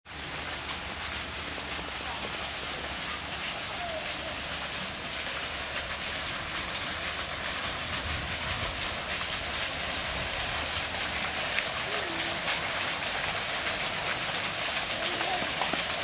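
Steady hiss of splashing water from a small garden fountain, growing slowly louder, with a few faint distant voices.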